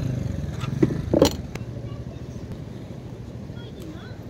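A scooter's hinged seat being swung down over the under-seat storage and shut with a short thud a little over a second in, over a low rumble.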